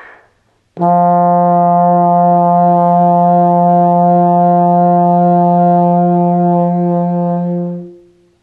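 Bass trombone holding one long, loud note for about seven seconds with a slow, even vibrato made by moving the jaw. This is the slow extreme of brass vibrato, meant to give a rich long note a calm, resonant sound. The note starts about a second in and tapers off just before the end.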